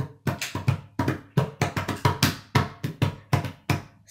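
Hand slapping and tapping a thick wooden tabletop in a quick, fairly even run of knocks, about four a second, showing the sound the table makes.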